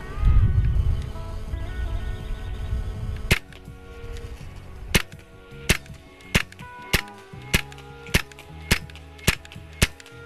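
.25 Hatsan Invader semi-automatic PCP air rifle firing a rapid string of about ten shots, roughly one every half-second, starting about a third of the way in. A low rumble fills the first three seconds before the shots.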